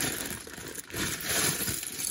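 Clear plastic zip-top bag full of loose LEGO pieces being handled and squeezed: the plastic crinkles while the bricks shift and click against each other inside.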